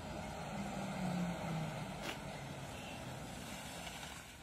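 A vehicle engine running faintly over steady outdoor noise, with a faint click about two seconds in.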